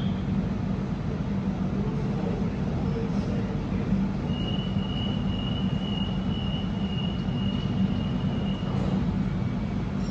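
Electric suburban train running with a steady low rumble. A thin, high-pitched whine sounds from about four seconds in until about nine seconds.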